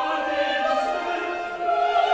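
A chorus singing held notes in several parts, accompanied by a Baroque orchestra, in an operatic passage.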